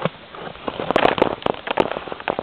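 Packed snow crunching underfoot: a quick run of irregular crackles and clicks, thickest past the middle.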